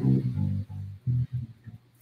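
Bass guitar plucked: a run of short, low notes that thins out and stops about a second and a half in.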